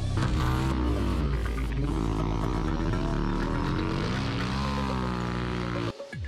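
Motorcycles riding past one after another, their engine notes falling and rising in pitch as they go by, with music underneath.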